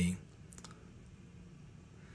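A man's spoken word ending, then quiet small-room tone with two faint clicks about half a second in.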